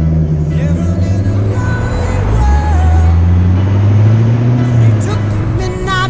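Ford Mustang's engine accelerating, its pitch climbing steadily for about four seconds and then easing off near the end, with tyre and wind noise, heard up close from a hood-mounted camera. Background music with singing plays underneath.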